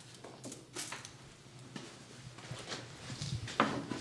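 Faint scattered clicks and light knocks of hands working at a wooden side-bending jig, setting a thermometer probe and parts in place, with a slightly louder knock near the end.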